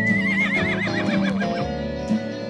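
A horse whinnying once: a high, wavering call that slides down and fades out over about a second and a half, over acoustic guitar music.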